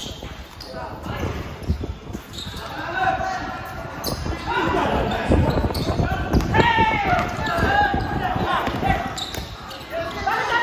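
A basketball bouncing on a hard court as it is dribbled, with repeated short thumps, while players' voices call out loudly through the middle and later part.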